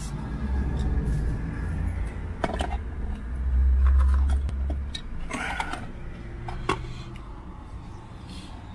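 Low rumble of handling and air on a phone's microphone, with a few sharp clicks and rustles as chips are picked from a tray.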